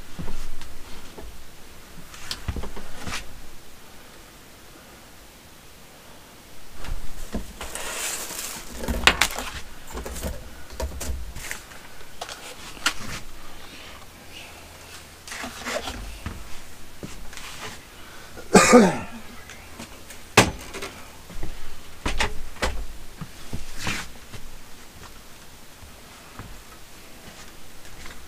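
Handling noises as clothes and stored items are picked up and moved about: rustling and scattered knocks, clicks and thumps at uneven intervals, with one louder clatter about two-thirds of the way through.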